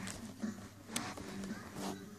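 Handling noise on a phone's microphone: rustling and three soft knocks as the phone and a plastic doll are moved about by hand, over a faint steady hum.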